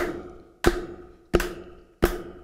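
Taps on the body of a ukulele keeping the beat in place of strumming, evenly spaced about two-thirds of a second apart. Each tap is followed by a short ring that fades away.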